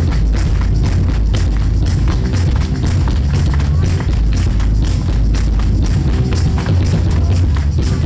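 Live band playing an instrumental number: electric guitar and drum kit over a heavy bass, with a fast, steady beat of percussion strokes.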